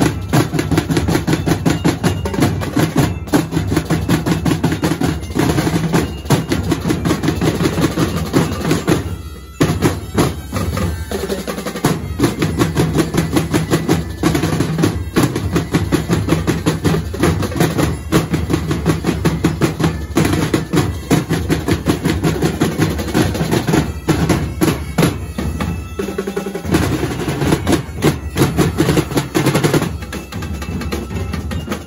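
Marching drumline of snare drums and bass drums playing a fast, dense cadence with rolls. The playing stops for a moment about nine seconds in, then carries on.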